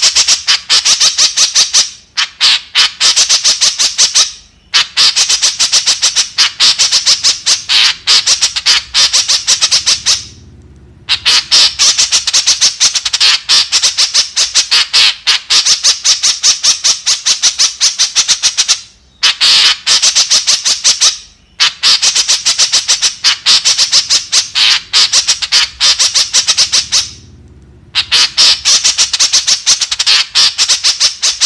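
White-breasted woodswallow (kekep) calling in fast runs of short, high, rapidly repeated notes. The runs last a few seconds and are broken by brief pauses.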